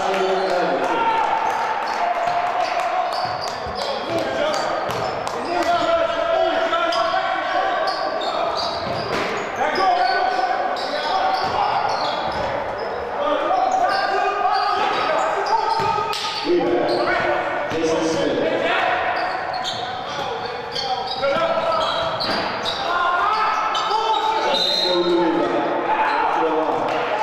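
Live basketball play in a large gym: the ball bouncing on the hardwood court over and over, with players and coaches calling out throughout.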